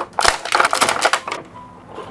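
Rapid clattering and crinkling of a hard black plastic packaging tray being handled as small toy pieces are pulled out of it, stopping about a second and a half in.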